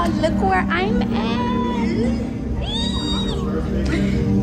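People's voices in a crowded room, many of them high and sliding up and down in pitch, with one longer high call about three seconds in, over a steady background hum.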